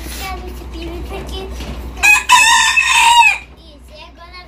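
A rooster crowing once about two seconds in, one loud call lasting over a second.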